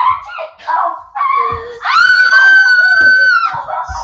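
A child's high-pitched squeal of excitement, held for about a second and a half around the middle, after a few short high-pitched exclamations.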